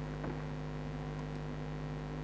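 Steady electrical mains hum, a low buzz of several steady tones picked up by the recording, with no other clear sound.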